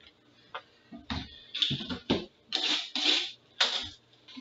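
Cardboard box of hockey cards being picked up and handled on a table: a run of short scraping and rustling noises beginning about a second in.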